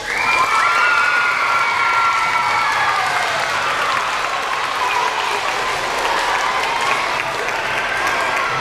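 A gym full of schoolchildren applauding and cheering at the end of a brass band piece, with high held shouts over the clapping in the first few seconds.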